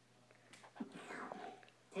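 Faint sipping and swallowing sounds from a cartoon character drinking from a soda can, with small vocal noises, starting about half a second in. Played through a TV's speaker.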